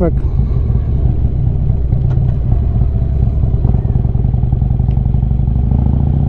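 Harley-Davidson Street Glide's V-twin engine running steadily under way, heard from the rider's seat. Its note climbs a little near the end.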